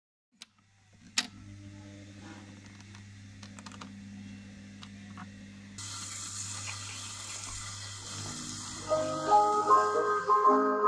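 Gramophone starting a 78 rpm shellac record: a sharp click about a second in, then the turntable running with a low steady hum. Around six seconds in the needle meets the record and surface hiss and crackle come in, and near the end the orchestral introduction of the record begins.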